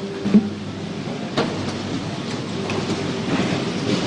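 Applause from a full parliamentary chamber: a dense, steady clatter of many hands with no break.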